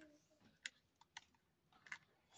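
A few faint, sharp clicks of a small plastic toy tricycle being handled, over near silence.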